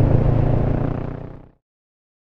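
Kawasaki Versys 650 parallel-twin engine running steadily under way, with wind and road noise. The sound fades out about a second and a half in.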